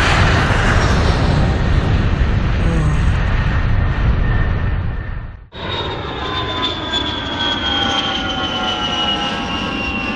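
Loud rumbling noise that cuts off abruptly about halfway through, at a scene change. It is followed by a steady engine-like drone with several thin tones slowly falling in pitch.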